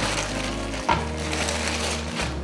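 Thin plastic bag crinkling as wheat-gluten sausages are pulled out of it by hand, with one sharper crackle just under a second in, over background music.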